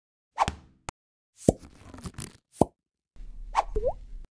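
Sound effects of an animated logo sting: a run of short pops and clicks, about five spread over the first three seconds, then a short rising chirp over a low hum near the end.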